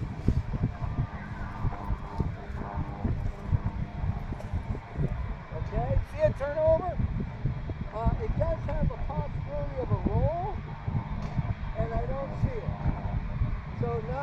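Wind buffeting the microphone, a gusty low rumble throughout, with a man's voice faintly muttering now and then in the second half.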